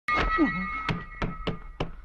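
Film fight sound effects: a quick series of hard wooden thunks, about six blows roughly a third of a second apart, as wooden staves strike. A steady high ringing tone runs under the first blows, and a short grunt comes near the start.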